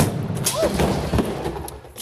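A gas explosion: the built-up gas inside the container ignites with a sudden bang that blows the container apart. A rushing noise follows and dies away just before the end.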